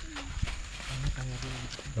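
Quiet background speech, a man talking in low voice in the gap between louder talk, with a few faint clicks.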